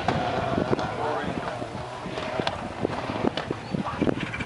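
Indistinct voices with wind noise and scattered knocks from a phone microphone being handled outdoors.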